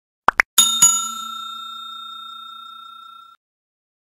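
Two quick clicks, then a bright bell ding struck twice that rings out and fades over about three seconds: the click-and-notification-bell sound effect of a subscribe-button animation.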